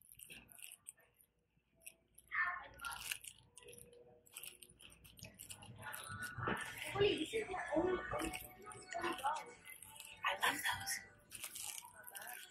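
Indistinct voices of people talking nearby, starting about two seconds in and busiest in the second half, with a few small clicks and rustles.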